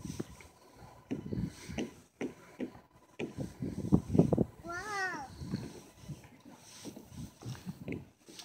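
Shoes and hands knocking on a hollow plastic playground slide as a toddler climbs up it: soft, irregular thuds. About five seconds in, a voice calls "wow" twice.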